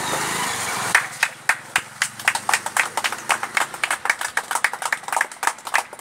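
A small group of people clapping by hand, sharp irregular claps several a second, starting about a second in after a steady murmur of noise.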